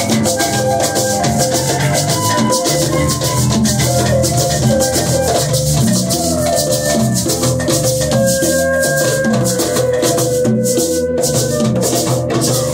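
Live group music on hand drums with a steady rattle of shaker-like percussion over a moving bass line and held pitched notes.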